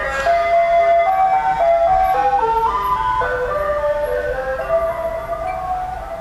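A loud tinkling jingle melody, single notes stepping up and down in pitch one after another, of the kind an ice cream truck plays. It eases slightly in level near the end.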